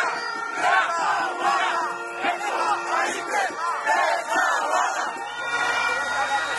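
A large crowd of protesters shouting and chanting together, many voices rising in loud surges at a steady rhythm. Near the end a low steady rumble comes in under the voices.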